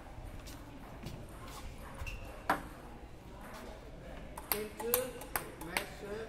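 Celluloid table tennis ball bouncing with sharp light clicks: one bounce about halfway through, then a quick run of bounces near the end, as a player bounces the ball before serving.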